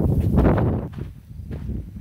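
Wind and handling noise on a phone's microphone, a loud low rumble for a little under a second. Then quieter footsteps with light scuffs as the walker moves off.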